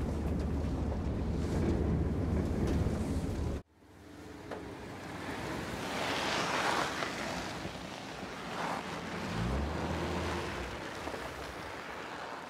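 A van's engine droning low and steady, heard from inside the cabin, cuts off abruptly a few seconds in. Then a windy outdoor rush of noise swells, and a low engine note comes in near the end as the van drives up and stops.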